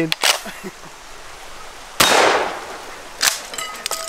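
A single gunshot about two seconds in, with a sudden crack that trails off in a fading echo over about a second. Short sharp clicks come once near the start and again just after three seconds.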